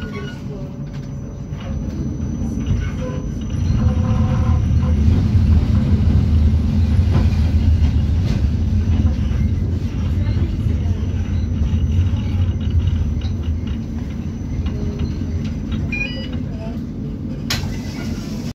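Tram running on its rails, heard from inside the passenger car: a steady low rumble that grows louder about four seconds in and eases off over the last few seconds.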